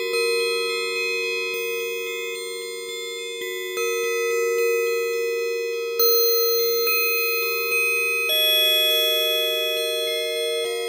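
Synthesizer with a bell-like patch, improvised slowly: long held notes stacking into sustained chords, with new notes sounding about four, six and eight seconds in.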